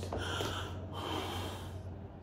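A woman gasping and breathing hard in short breathy bursts, overcome with joy.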